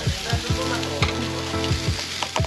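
Meat sizzling on a smoking kettle barbecue grill: a steady frying hiss with a few sharp clicks.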